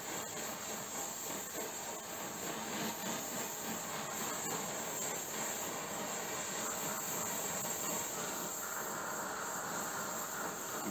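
Oxy-acetylene torch flame hissing steadily, with no breaks or changes, as it heats an aluminium part to burn off a soot coating and anneal it.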